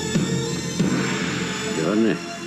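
Film score music from a screened film clip: sustained pitched notes held over one another, with a voice coming in just before the end.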